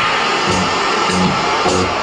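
Hip hop turntablism: a record played on a turntable and cut in and out at the DJ mixer, with short snatches of bass coming and going.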